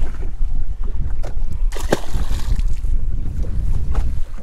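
Wind buffeting the camera's microphone in a steady low rumble, with water sounds around the boat and a couple of light knocks near the middle.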